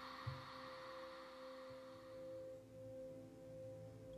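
Faint ambient music: a single held note, steady and slowly fading, with a soft low thump shortly after it begins.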